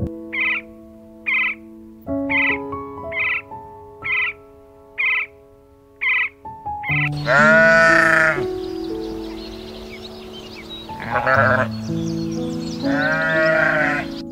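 Barbary sheep bleating: three long, wavering calls, the first and loudest about seven seconds in, over gentle piano music. Before them come about eight short, evenly spaced high bird calls.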